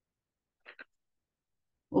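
Near silence on a video-call line, broken a little under a second in by two quick, faint clicks close together; a woman's voice starts right at the end.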